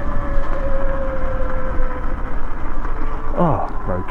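Sur-Ron electric dirt bike riding over a grass field: steady wind buffeting and rolling rumble, with a thin whine that drops slightly in pitch and fades out about halfway through. A brief voice near the end.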